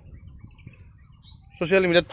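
A few faint bird chirps in a short pause in a man's talk. His voice comes back about one and a half seconds in.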